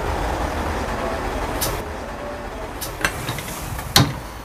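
Steady rumble and running noise of a train in motion, with a few sharp clicks.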